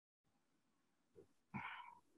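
Near silence: faint room tone, with one brief, faint sound about one and a half seconds in.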